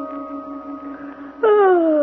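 A held music chord of a scene bridge fades out, and about a second and a half in a person gives a long yawn that slides down in pitch.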